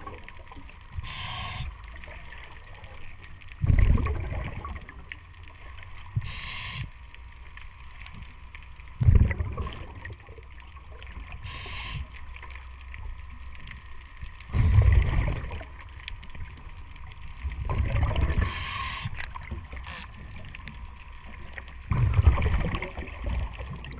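A diver breathing through a regulator underwater: a hissing inhalation alternates with a rumbling burst of exhaled bubbles, one breath about every five seconds.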